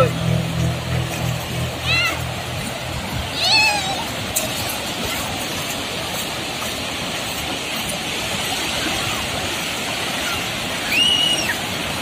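Sea surf breaking and washing through the shallows of a beach: a steady rush of waves, with a few brief distant voices.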